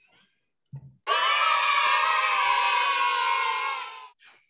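A burst of crowd cheering and screaming, dropped in as a sound effect. It starts suddenly about a second in, holds for about three seconds and eases off near the end.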